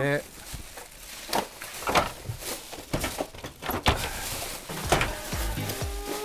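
Irregular knocks and clunks of KTX train seats and fold-down tray tables being handled as seats are turned round, each a sharp clack. Background music comes in about two-thirds of the way through.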